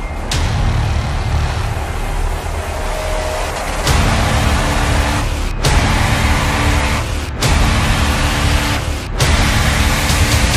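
Loud intro music and sound design for an animated channel logo: heavy bass under a rushing noise. It gets louder about four seconds in, then is chopped by short, sudden drop-outs every second and a half or so.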